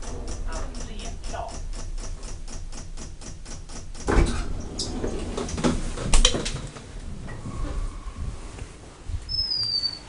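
Rapid, even ticking from a KONE elevator's door mechanism, about five ticks a second, which stops about four seconds in; two loud thumps follow about two seconds apart. The ticking is taken for a fault in the car's inner door or its door interlock.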